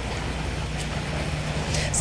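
Steady background noise with a low, even hum and no distinct events.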